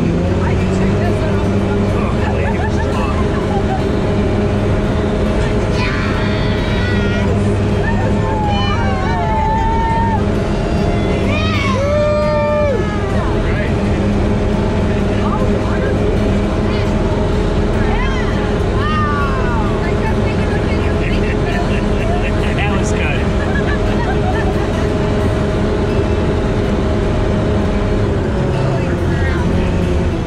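Sherp amphibious ATV's diesel engine running at a steady speed as it drives, heard from inside the cab, with voices talking over it now and then.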